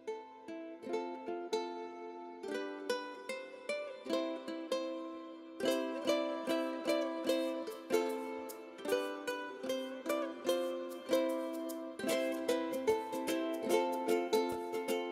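Background music of plucked ukulele with a steady rhythm, growing fuller about two and a half seconds in and again near six seconds.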